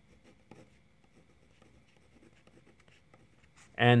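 Pen writing on a paper worksheet: faint scratching strokes with a small tap about half a second in.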